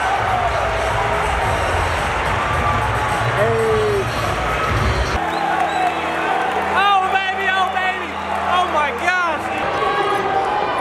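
Basketball arena crowd chatter and din under background music. About five seconds in, the crowd noise cuts away to steady held music tones, followed by a run of short high sneaker squeaks on the hardwood court.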